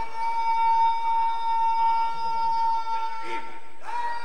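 Public-address microphone feedback: a steady high-pitched tone held without wavering for nearly four seconds, breaking off near the end in a short upward slide.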